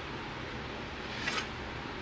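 Quiet room tone: a steady low hiss, with one faint brief rustle about a second and a quarter in.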